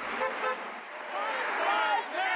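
A car passing on the road, with car-horn toots and voices over the traffic noise.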